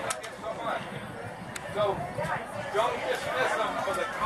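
People talking in a group: conversational speech and chatter, with a few brief clicks.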